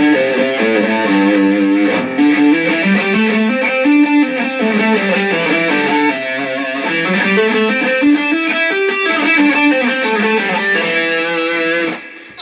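Clean electric guitar playing the A minor pentatonic scale up and down single strings, two notes per string: the first note picked and the second hammered on going up, with pull-offs coming back down. The notes run up and down in repeated runs.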